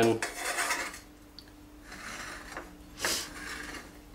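A dessert spoon scraping and pressing crushed digestive biscuit base to level it in a cake ring: a few rasping strokes, the strongest about three seconds in.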